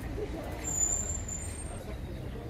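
Street ambience: a steady low rumble of traffic with faint distant voices. A thin, high-pitched squeal runs from about half a second in until near the end.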